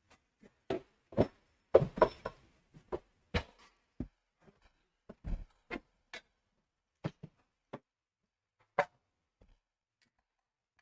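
Irregular knocks and clicks of bicycle parts, tools and cardboard packaging being handled on a workbench, with a dense cluster of sharp knocks about two seconds in and another single knock near the end.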